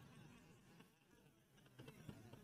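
Near silence: faint room tone in a pause of the recorded talk.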